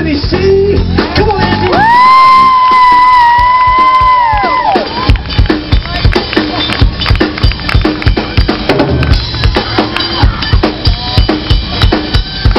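Live rock band with a drum kit: a long, high note is held for about three seconds with the band quiet beneath it, then the drums come back in with a steady beat and the band plays on.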